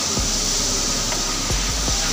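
High-pressure sea-water hose jet spraying against the steel bulkhead of a ship's cargo hold: a steady hiss of water.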